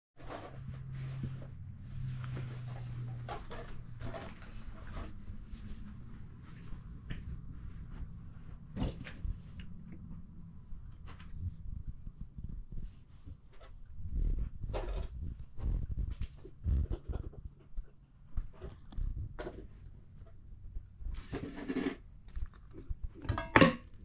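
A cat purring, a low steady rumble that is strongest in the first few seconds, with knocks and rustling in the second half.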